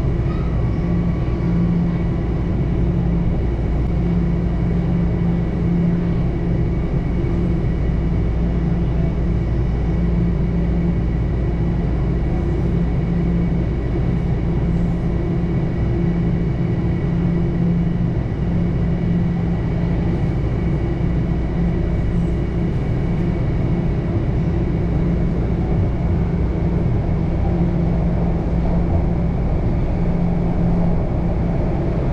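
TTC subway train running through a tunnel, heard from inside the car: a steady rumble of wheels on rail, with a low hum that swells and fades every second or two and a faint steady high whine.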